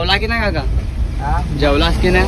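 A steady low rumble of a moving car's engine and tyres heard from inside the cabin, under a man talking.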